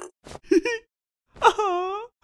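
Wordless cartoon voice acting: a couple of short excited vocal sounds, then near the end a long, tearful moan from the moved bank teller character that falls in pitch and then holds level.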